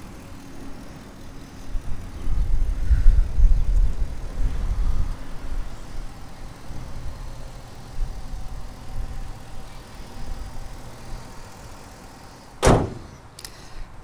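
A low rumbling noise, loudest a few seconds in, then a single hard slam near the end as the hood of the Ford F250 pickup is shut.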